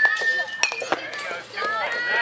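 Metal bat striking a baseball with a sharp ping that rings for about half a second, followed by a second, higher clink just after.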